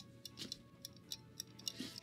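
Faint, irregular clicking of the CamLapse's egg-timer mechanism as its dial is turned by hand to wind it, a louder click right at the start followed by small ticks.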